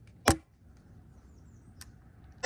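Hand-squeezed staple gun firing once, a single sharp snap about a quarter second in, as it drives a staple through carpet into a wooden trailer runner. A faint click follows near the end.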